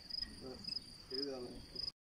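Crickets chirping in a quick, even series of high pulses, about two to three a second, under faint voices; the sound cuts out just before the end.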